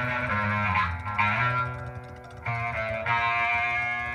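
Live prog-rock band: Nord keyboards playing held chords over electric bass. The sound thins out about a second and a half in, and the full chords come back about a second later.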